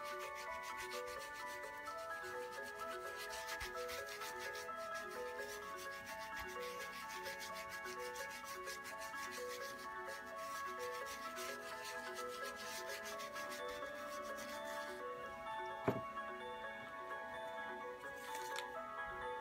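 Quick, rapid rubbing strokes by hand over a carved wooden printing block, over soft background music. The rubbing stops about three seconds before the end, and a single sharp tap follows shortly after.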